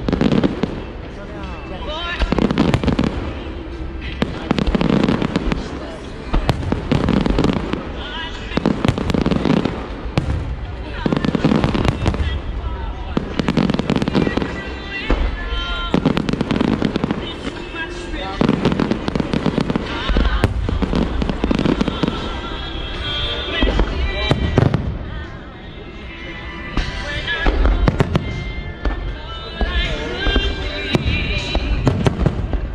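Aerial fireworks shells bursting one after another in a continuous barrage, with crackling from the glittering stars.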